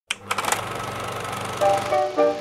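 Film projector starting with a few clicks, then running with a fast, steady rattle. A few melodic music notes come in near the end.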